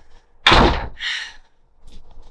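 A hinged front door being shut, with one loud impact about half a second in and a softer follow-up sound about half a second later.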